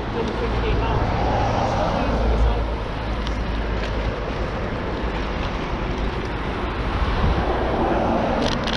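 Steady wind rumble on the microphone of a camera on a moving bicycle, mixed with road noise.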